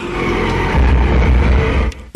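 Action-film soundtrack: music and sound effects with a deep rumble that swells about a second in and cuts off just before the end.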